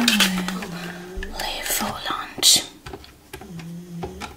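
A woman whispering inaudibly into a corded telephone handset, with short hummed 'mm' sounds near the start and again near the end.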